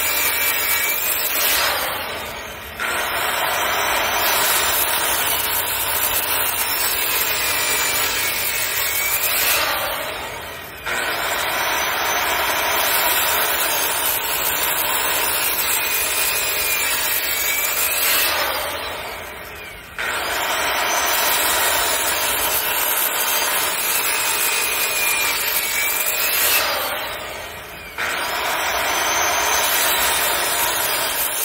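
Circular saw cutting a row of shallow kerfs across a white oak beam to clear out a mortise. Four times the saw is let off and winds down, then is started again for the next cut.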